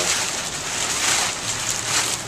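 Rain falling steadily, an even hiss that swells briefly about a second in.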